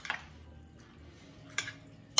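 A metal spoon stirring chopped vegetables in a glass bowl. It is mostly quiet, with a single sharp clink of spoon against glass about one and a half seconds in.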